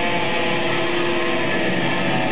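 Live black metal band playing, with distorted electric guitars and bass holding a steady, sustained chord.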